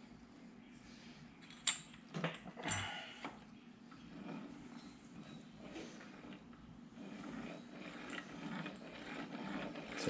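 A few sharp metal clinks, then the SCAT 84 mm stroker crankshaft being turned slowly by hand in a bare VW air-cooled engine case half: a soft continuous metal-on-metal whir with faint gear ticks as its gear drives the distributor drive shaft. It is turning nicely, with no binding.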